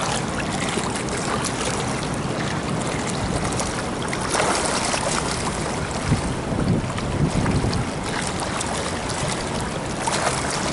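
Pool water splashing and sloshing as a swimmer swims breaststroke with frog kicks, heard from close to the water surface. There are louder splashes about four seconds in and again a couple of seconds later.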